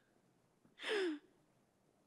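A woman sobbing into a handheld microphone: one breathy sob about a second in, falling in pitch.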